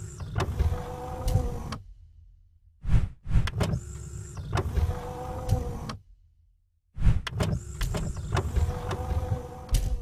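Produced logo-sting sound effects: a machine-like whir with a steady hum and heavy thuds and sharp hits, in three bursts of two to three seconds with about a second of silence between them.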